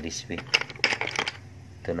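Wet sea snail shells clicking and clacking against one another as a hand rummages through a pile of them, a quick run of sharp clicks in the first second or so.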